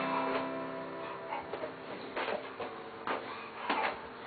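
Acoustic guitar: a chord rings and fades away over the first second, then three short, sharp sounds on the strings break the lull, the last about three-quarters of the way through.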